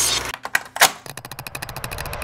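Edited glitch sound effects in a soundtrack: the music cuts off abruptly, then come a few sharp clicks and one loud hit. After that a rapid, even stutter of clicks runs at about fifteen a second.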